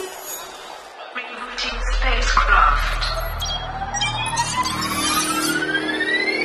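Electronic sci-fi sound effects: scattered glitchy clicks and crackles, a deep rumble coming in about a second and a half in, and a single rising pitch sweep that builds from a couple of seconds in to the end, like a system powering back up after an impact.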